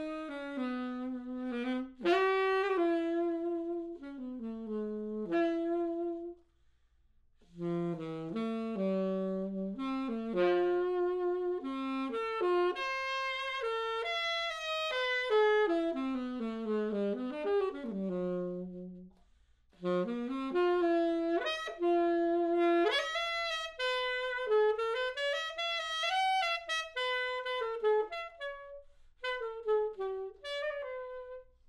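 Yamaha YAS-82Z alto saxophone played solo in flowing melodic phrases, one note at a time. The playing stops for short breaths about six seconds in and again near twenty seconds.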